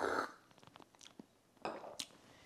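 A man sipping espresso from a small glass: a short slurp right at the start, then a few faint mouth clicks as he tastes it, and a short breath near the end.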